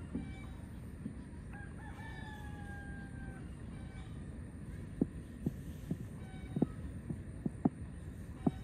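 A rooster crowing once, one long call of about two seconds that falls slightly in pitch. In the second half come several short, soft low thumps.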